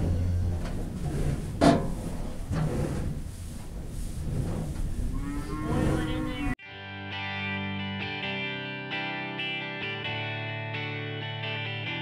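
Barn noise with a sharp knock about two seconds in, then a cow moos once just before the sound cuts abruptly to guitar music, which fills the second half.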